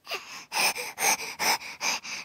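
A baby's quick, breathy gasps, about five in two seconds at an even rhythm.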